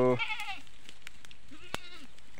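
A goat bleating once: a short, high, quavering call of about half a second that drops in pitch as it ends.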